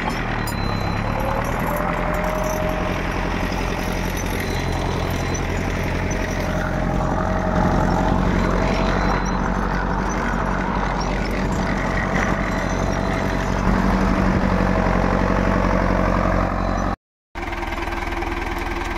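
Tractor's diesel engine running steadily under load while pulling a seed drill through ploughed soil, heard from up close on the drill. The sound breaks off briefly near the end.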